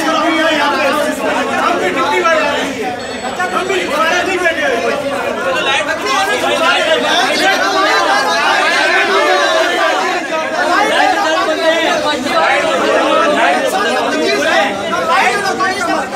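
An angry crowd of men, many voices talking and shouting over one another at once, loud and unbroken.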